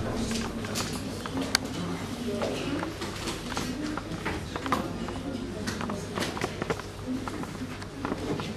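A voice talking in a room, not picked up as words, with scattered clicks and taps. A sharp click about one and a half seconds in is the loudest sound.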